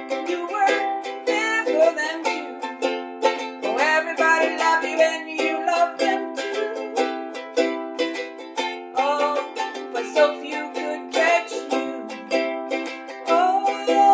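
Ukulele strummed in a steady rhythm, chords ringing in a small room, with a voice singing along at times.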